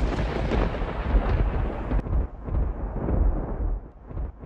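Thunder sound effect: a rolling rumble left over from a thunderclap, slowly dying away.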